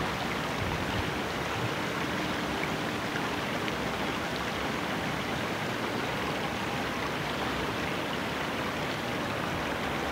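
Steady rushing of shallow water flowing over a rocky riverbed.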